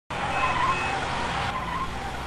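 Car driving off with its engine running and its tyres squealing twice, about half a second in and again near the end.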